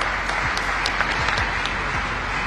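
A large audience applauding, a steady wash of clapping with a few sharper single claps standing out.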